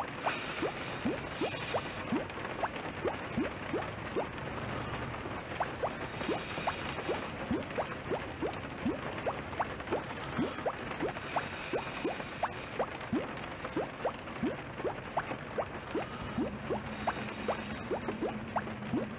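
Bubbling water sound effect: a steady watery hiss with quick rising bloops, a few a second, like bubbles rising through water.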